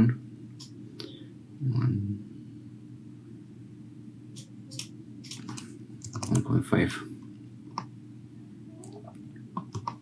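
Scattered computer keyboard keystrokes and mouse clicks as values are typed into a 3D modelling program, over a steady low hum.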